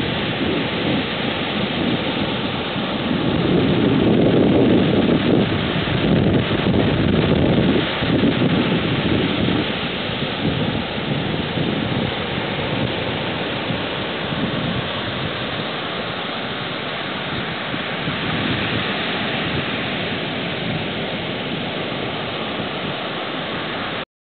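Ocean surf breaking and washing up a small beach: a steady rushing roar that swells louder a few seconds in, then settles.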